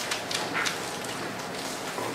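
Dry-erase marker writing on a whiteboard: a few short, faint scratchy strokes in the first half, over steady room hiss.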